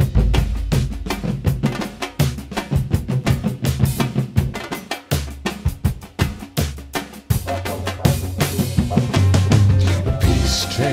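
Instrumental drum break in a recorded song: samba-reggae drumming on large surdo drums together with a drum kit, fast and dense, over a sustained bass line.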